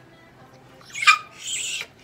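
A Bichon Frise gives one sharp, loud yelp about a second in while being handled on the exam table. A short hiss of about half a second follows.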